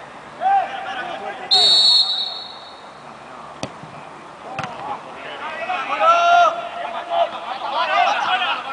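Referee's whistle blown once, short and shrill, signalling the free kick. About two seconds later the ball is struck with a sharp thud, and a second thud follows a second after. Players shout before and after the kick.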